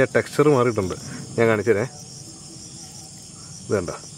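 Night insects trilling steadily at a high, even pitch, under a few short bursts of a man's voice.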